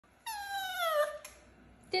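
Wire fox terrier puppy whining once: one high whine of nearly a second that slides down in pitch, the kind of whine that asks to be let out of its pen. A small click follows.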